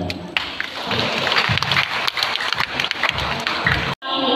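An audience applauding: many hands clapping together in a large hall. It starts just after a man stops speaking and cuts off suddenly near the end.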